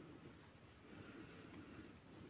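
Near silence: room tone, with faint rustling of a knitted wool hat being handled.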